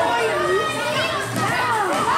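Many children's voices shouting and calling out at once during a handball game, echoing in a large sports hall.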